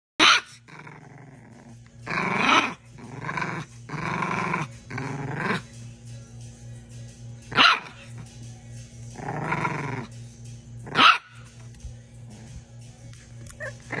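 Bulldog puppies giving three short, sharp barks and several longer, drawn-out cries that rise and fall in pitch.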